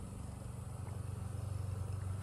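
A steady low motor hum with a fine rapid pulse, growing a little louder in the second half.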